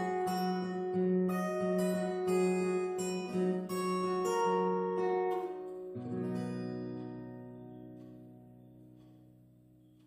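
Acoustic guitar fingerpicked, a run of single plucked notes over a steady bass. About six seconds in, a final low chord is struck and left to ring, fading away.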